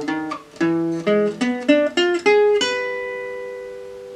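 Selmer-Maccaferri-style gypsy jazz acoustic guitar playing a picked single-note lick of about eight notes in E7. The last note, struck about two and a half seconds in, is left to ring and fades out.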